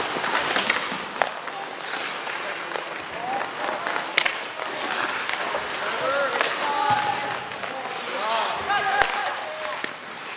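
Ice hockey in play in an arena: a steady hiss of skates on the ice, a few sharp clacks of sticks and puck, the loudest about four seconds in, and voices shouting and calling out in the second half.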